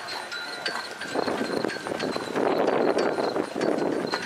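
Hoofbeats of a horse landing over a show-jumping fence and cantering on across sand footing, under a rushing noise that swells from about a second in.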